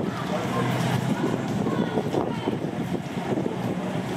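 Steady rain and wind noise with the low engine hum of an Irish Rail diesel railcar creeping in towards the platform. A few faint voices come through around the middle.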